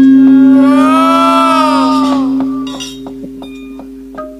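Gamelan accompaniment: a low held note rings and slowly fades away, with a pitched melodic line rising then falling over it about a second in and a few light taps.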